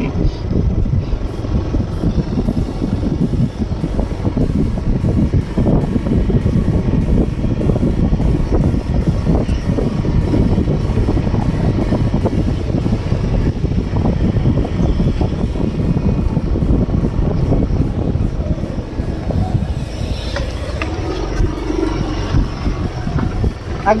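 Loud, unsteady low rumble of wind buffeting the microphone of a camera moving at cycling speed.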